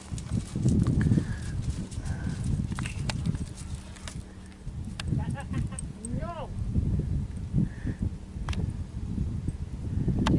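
Wind buffeting the microphone in uneven gusts, a heavy low rumble.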